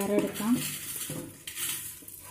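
Raw rice grains being tipped from a steel bowl into a pressure cooker and swept out by hand, pattering and rattling onto the metal pot.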